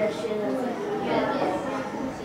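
Overlapping children's voices chattering in a classroom, with no single clear speaker.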